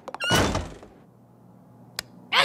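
A cartoon door slam: one loud, sudden thud about a quarter second in that dies away within half a second, followed by a low, quiet room hum.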